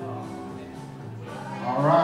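Live band instruments holding low, sustained notes, with a louder, wavering pitched note swelling in near the end.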